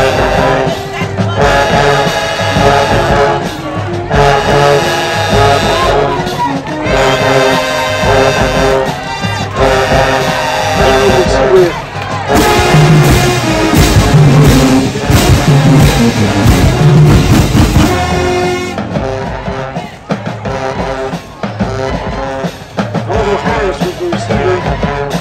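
High school marching band playing in the stands, loud brass with sousaphones in short phrases separated by brief breaks. About halfway through comes a stretch of heavier low horns and percussion hits, and the last few seconds are a little quieter.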